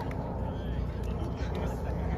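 Steady low outdoor rumble with faint voices of people talking in the distance.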